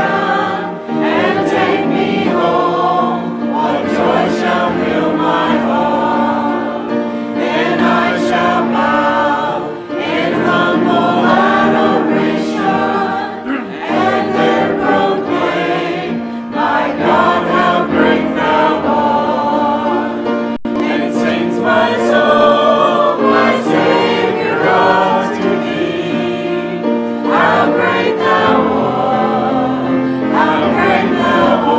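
A church congregation and choir singing a hymn together, a steady stream of many voices.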